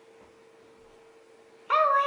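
A short, high-pitched cry near the end, rising slightly in pitch and then held briefly, over a faint steady hum.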